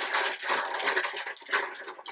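A hand rummaging through a pile of small hollow plastic capsules in a fabric-lined basket: a continuous clatter of plastic knocking on plastic, with the rustle of the cloth liner, dying away near the end.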